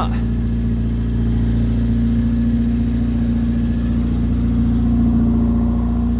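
A Rover Mini Cooper 1.3i's 1275 cc A-series four-cylinder engine running steadily at idle.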